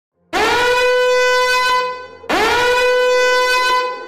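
Two long horn-like warning blasts, each about a second and a half, one pitch held steady after a quick upward swoop at the start of each.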